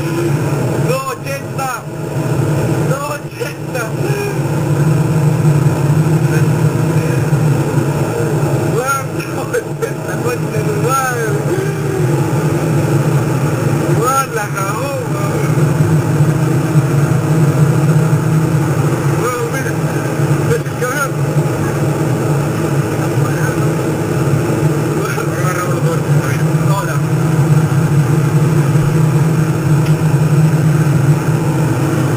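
A steady, low vehicle engine drone at constant speed throughout, with people talking and a short laugh over it.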